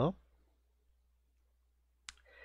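The end of a man's spoken word, then near silence.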